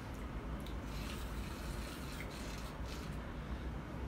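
Low, steady background rumble with a few faint, soft mouth clicks from tasting a sip of cognac.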